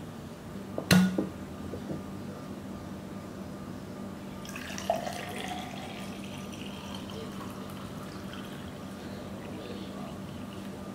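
A sharp knock about a second in as a drinking glass is set down on a wooden table. Then green juice is poured from a glass bottle into the glass, a steady pour lasting several seconds, over a low steady hum.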